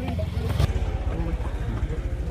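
A low, steady rumble with people's voices calling out over it, and a brief sharp noise about half a second in.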